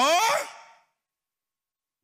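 A preacher's voice through a microphone, drawing out one word that rises and then falls in pitch and fades away within the first second, followed by silence.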